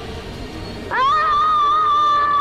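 A boy's long, high-pitched scream that starts about a second in with a sharp upward rise, then holds steady on one pitch, much louder than the background music before it.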